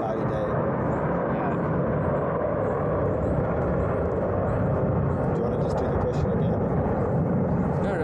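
Steady low rumble of background noise at an even level, with faint indistinct speech at moments.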